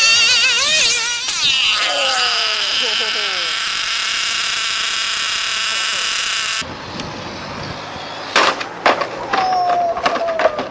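Radio-controlled car running flat out: a high, buzzing motor whine with several pitches together, wavering for the first second or so, sliding down, then held steady. After a cut about 6.5 seconds in there are a few sharp knocks and a short high whine near the end.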